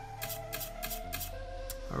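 Online blackjack game's card-dealing sound effects: about four short, crisp clicks in quick succession as the cards are dealt, over soft steady background music.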